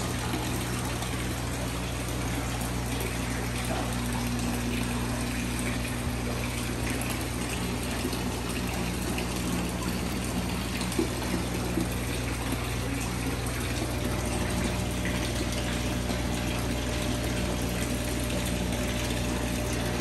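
Water from a filter return pouring and splashing steadily into a large open fish tank, over a steady low hum.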